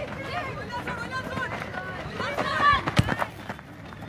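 Voices of players and spectators shouting and calling at a football match, loudest a little past two seconds in, with a single sharp thump about three seconds in.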